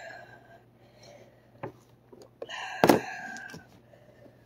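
A teenage boy's high, strained cry of pain from the burning heat of a super-hot chili chip, lasting about a second in the second half, with a sharp knock in the middle of it. A shorter similar cry fades out right at the start.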